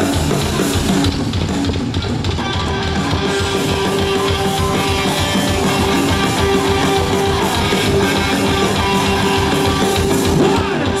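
Live rock band playing electric guitars and drum kit, loud and steady, with no vocals. A long held note sounds over the band from a few seconds in.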